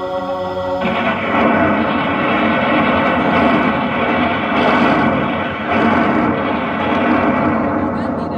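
Band title song blasting from a truck-mounted DJ speaker stack at high volume. About a second in, held notes give way to a dense, harsh, distorted wall of sound.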